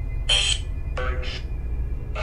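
Spirit box app sweeping through radio static: a steady low hum broken by two short choppy bursts of sound, about a quarter second in and about a second in.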